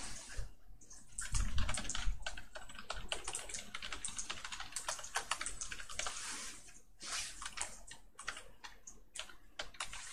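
Typing on a computer keyboard: irregular runs of keystroke clicks with short pauses, and a heavier low thump about a second and a half in.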